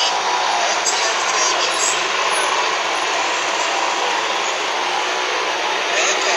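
Steady street traffic noise, with motorcycle engines passing on a busy road.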